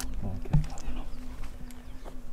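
A flying insect buzzing close to the microphone as a steady hum, under a low murmured voice, with a single bump about half a second in.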